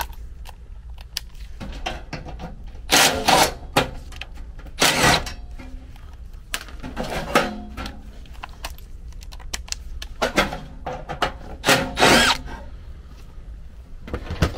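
Red cordless impact driver running in about five short bursts, backing screws out of an air handler's sheet-metal panel.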